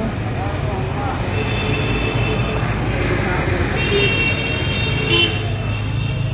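Vehicle engine running steadily in street traffic, heard from inside the vehicle, with vehicle horns sounding about two seconds in and again for about a second from four seconds in.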